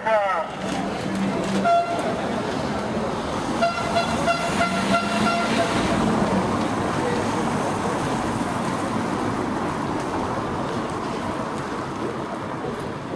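A horn sounding: a short toot about two seconds in, then a longer steady blast of about two seconds, over street noise.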